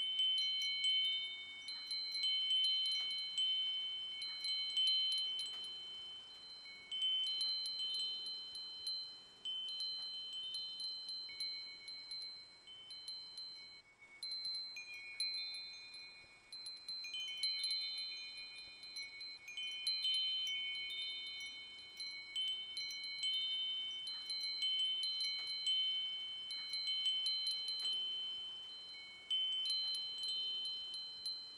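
Wind chimes ringing. A few high, clear tones are struck at irregular moments, overlapping one another and fading away.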